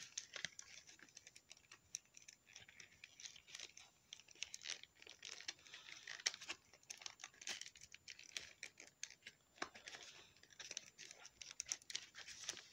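Faint, irregular rustling and small ticks of fingers working a small cloth coat onto a plastic action figure.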